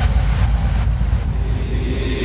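Deep, low electronic rumble from a hardstyle mix, with a hiss above it that thins out about halfway through.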